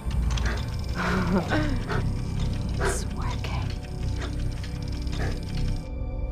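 Dark film score music with a steady low drone underneath, and a brief voice-like sound about a second in.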